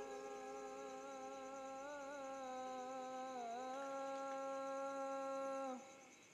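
Soft background music: one long held note with a slight dip in pitch about three and a half seconds in, cutting off suddenly just before the end.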